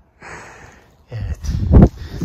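A short breathy exhale or sniff, then loud, gusting wind buffeting the phone's microphone from about a second in.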